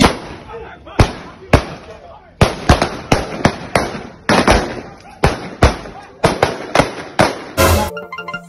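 Gunfire: about twenty sharp shots in quick, irregular succession, some in close pairs and runs of three, each followed by a short echo.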